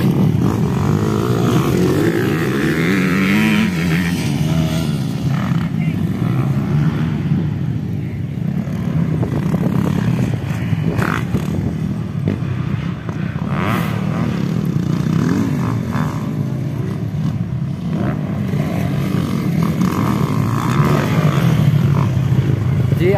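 Motocross dirt bike engines racing, revving up and dropping off as the bikes pass, over a steady low rumble of engines.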